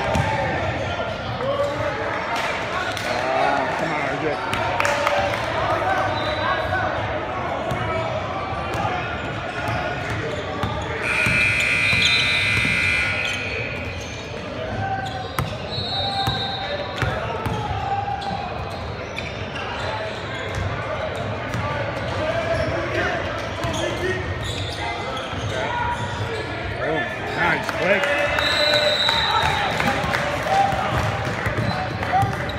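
Basketball game sounds echoing in a large gym: the ball bouncing, short high sneaker squeaks, and players and spectators talking and calling out. About eleven seconds in, a referee's whistle sounds for about two seconds.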